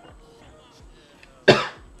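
A man coughs once, sharply, about one and a half seconds in.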